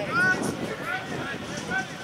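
Distant shouting voices across a rugby field: several short raised calls over a steady outdoor background hiss.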